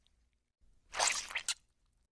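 A short cartoon sound effect about a second in, lasting about half a second and ending in a sharp click.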